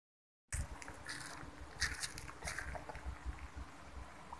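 A brief gap of dead silence, then a low uneven rumble of microphone handling with a few short scuffs and rustles about one to two and a half seconds in.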